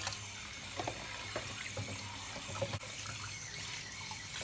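Water sloshing as a hand lifts salted eggs out of a plastic container of water in a sink to wash them, with a few faint knocks of egg against egg or container.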